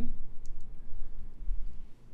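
Steady low hum with two faint, short clicks about half a second in.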